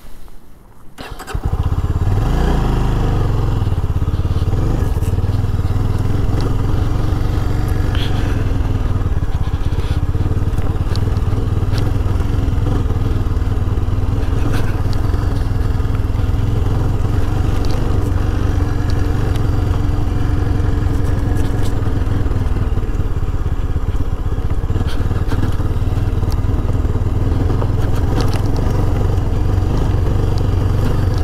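Yezdi Scrambler motorcycle's single-cylinder engine comes in suddenly about a second in. It rises briefly in pitch as it pulls, then runs steadily under way.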